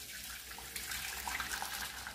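Boiling water pouring in a steady stream into an enamel pot, splashing onto the ingredients already in it.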